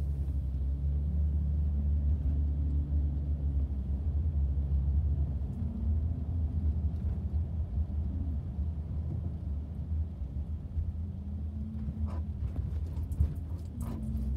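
Low, steady rumble of engine and tyre noise inside a moving car's cabin, with the engine's pitch rising and falling a little as the car creeps along in traffic. A few faint clicks near the end.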